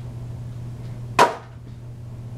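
A single short, sharp click about a second in, from the handling of a Blu-ray steelbook and its inserts, over a steady low hum.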